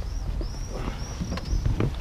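A person climbing into a car's rear seat: soft shuffling and a few light knocks as he settles in, over a steady low rumble, with faint high chirping in the background.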